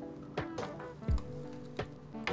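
Soft background music with a few short metallic knocks as the clamp lever of a manual sheet metal brake is pulled to lock the sheet in place for folding.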